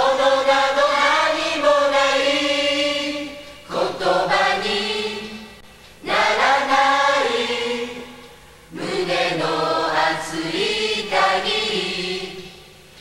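A choir of many voices singing in chant-like phrases of two to three seconds, each starting strong and fading away, with short breaks between them. It is the choral part of a Japanese rock song.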